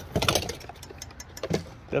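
Metal and glass kitchenware clinking and knocking in a plastic bin as a black wire paper-towel holder is pulled out, with a cluster of sharp clicks at the start and more about a second and a half in, over a low steady rumble.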